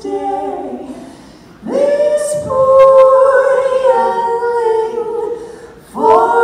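Two women singing in harmony on stage. One phrase fades out, and after a short breath the voices come back in about a second and a half in, holding long sustained notes. A new phrase begins right at the end.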